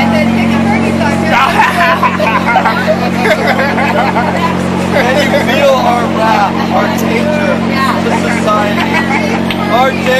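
Several voices talking over one another, over a steady low mechanical hum from the noisy floodlight set up over the sleeping area.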